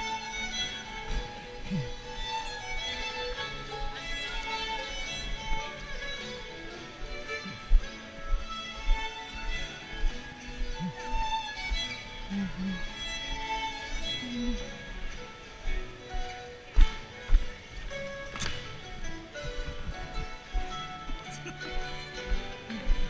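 Live contra dance band music led by a fiddle, with a steady dance beat. Dancers' feet thump on the wooden gym floor, loudest about eight seconds in and again between about seventeen and eighteen and a half seconds, and dancers' voices come through over the music.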